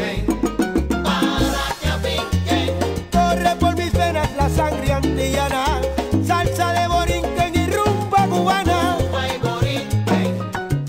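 Salsa music in a stretch without vocals: a band plays a stepping bass line under percussion and melodic instruments.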